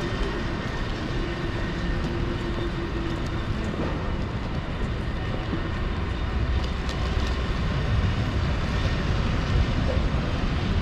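Steady low rumble of city street traffic, with a steady hum that stops about three seconds in. The rumble grows louder in the second half.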